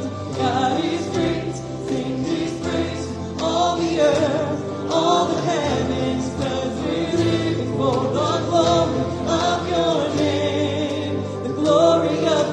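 Live contemporary worship song: a man singing lead into a microphone over a small band of acoustic guitars and keyboard, with held, rising and falling sung notes.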